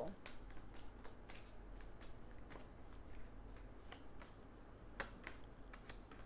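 A deck of oracle cards shuffled by hand: a run of soft, rapid card clicks, with a few sharper snaps near the end as cards are pulled and laid down on the spread.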